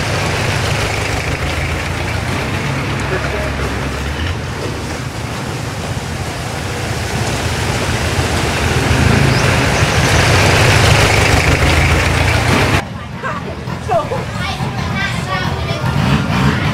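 Boat engine running steadily with water and wind noise, louder about two-thirds of the way through, then cut off abruptly near the end, leaving quieter voices and chatter.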